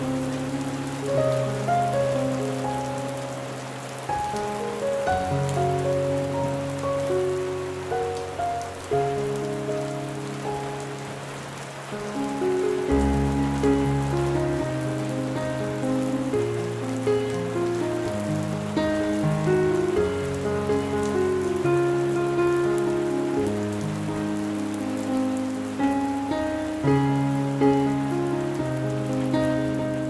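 Steady hiss of heavy rain on a window, with slow instrumental music playing sustained notes and changing chords throughout.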